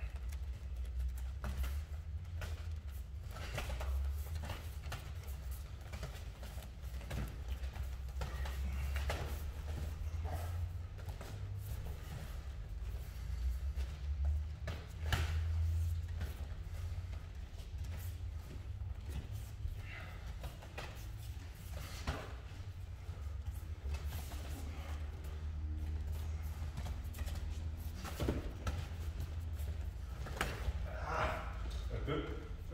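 Light MMA sparring: irregular soft thuds and slaps of boxing gloves and bare feet on foam mats, over a steady low rumble.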